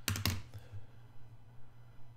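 Computer mouse clicking on on-screen calculator keys: a quick run of three or four sharp clicks at the start, then a few fainter clicks.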